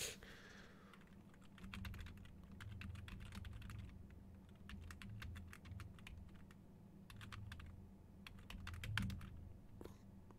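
Faint typing on a computer keyboard: quick runs of key clicks, with a short pause partway through before more keystrokes.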